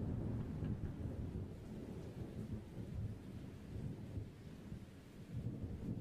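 Faint, uneven low rumble of handling noise as the handheld camera is moved about, with no distinct clicks or knocks.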